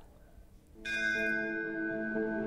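A bell struck once a little under a second in, ringing on with many steady tones, the higher ones fading first while the lower ones hold: the opening of a bell-toned music bed.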